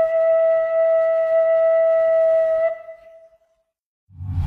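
A single long wind-instrument note held at a steady pitch, fading out about three seconds in.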